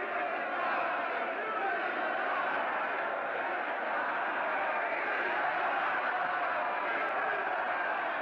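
A large crowd of men shouting and cheering together without a break, from an old 1930s film soundtrack.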